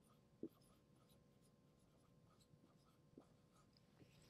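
Very faint strokes of a dry-erase marker writing on a whiteboard, with one brief louder stroke about half a second in.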